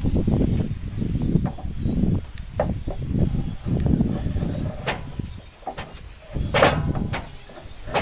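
A wooden trailer tailgate being set back into its stake pockets: wood scraping and bumping, with sharp knocks now and then, the loudest about two-thirds of the way through.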